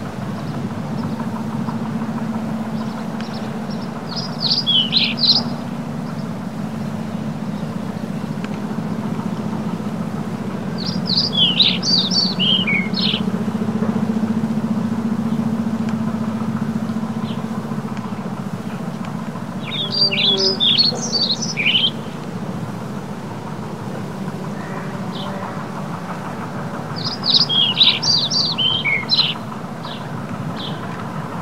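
A small songbird sings four short phrases of quick, high notes, about every seven to eight seconds, over a steady low hum.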